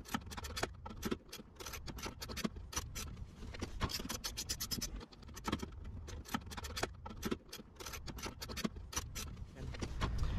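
Socket ratchet clicking in irregular runs of quick clicks, with short pauses between, as bolts are loosened.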